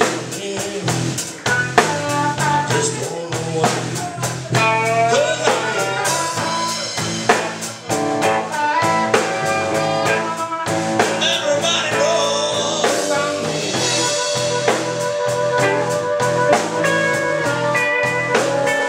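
Live blues band playing: harmonica over electric guitar, electric bass and a drum kit, with steady drum strokes keeping the beat.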